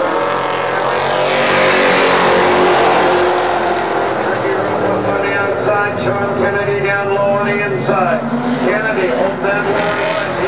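A pack of stock cars racing on an oval, several engines running hard at once. A loud rush as the cars pass close peaks about two seconds in, then several engines are heard together with their pitch rising and falling.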